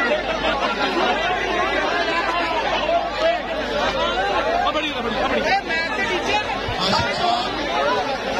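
Crowd of men talking over one another, a steady, dense chatter of many voices with no single speaker standing out.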